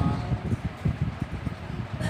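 Soft, irregular low thumps and rustling over a faint steady hiss, in a pause in the chanting, with the tail of a voice at the very start.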